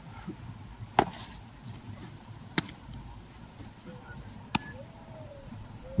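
A baseball smacking into a leather glove three times, spaced a second and a half to two seconds apart, as in a game of catch.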